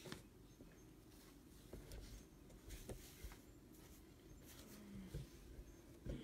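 Near silence with faint, scattered light taps and rustles, and a brief low hum about five seconds in.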